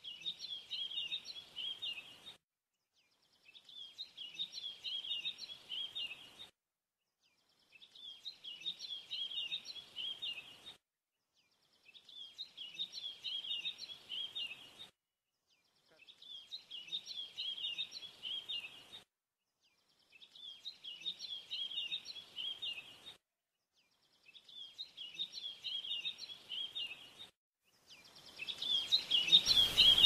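Birds chirping in short bursts of about two and a half seconds, the same burst repeating roughly every four seconds with silence between, like a looped birdsong effect. Near the end a louder, fuller sound comes in.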